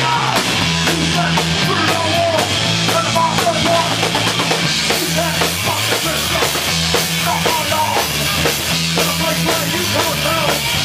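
Hardcore punk band playing live and loud: distorted electric guitar, bass and a pounding drum kit, with the singer's vocals over the top.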